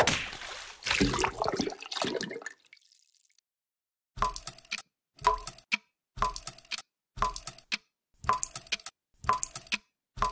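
Cartoon sound effects: a sudden watery splash that trails off over about two and a half seconds, then, after a short silence, a regular ticking about once a second, each tick a short cluster of clicks over a low thud, like a clock.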